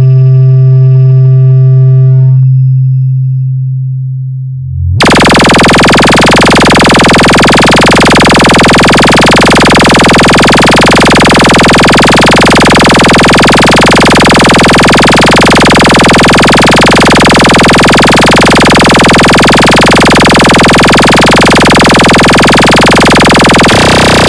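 Heavily distorted electronic DJ competition mix. A loud held bass tone fades over the first few seconds. About five seconds in, a dense wall of distorted noise starts abruptly and holds at full level.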